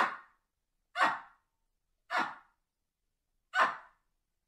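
Baboon barking: four short barks about a second apart.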